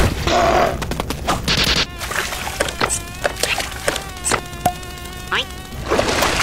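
Cartoon sound effects: a buzzing, wavering nasal drone held from about two seconds in until near the end, broken by several sharp knocks and taps, with a short rising glide just before the end.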